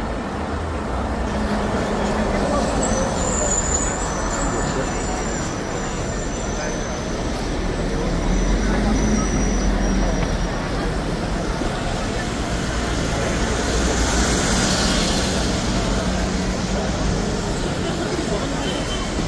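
Busy street ambience: a steady low rumble with voices in the background, and a brief hiss partway through the second half.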